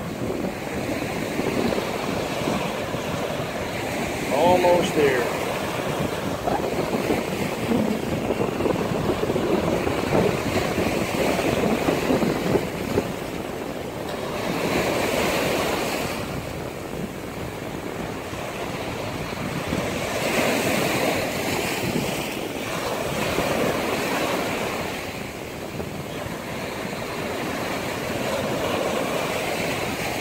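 Small waves breaking and washing up a sandy beach, the surf rising and falling in slow swells, with wind rumbling on the microphone.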